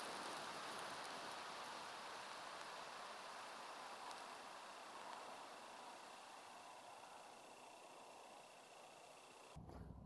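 Faint, steady hiss of an epoxy smoke element burning in a PVC tube, fading slowly as the flame dies down.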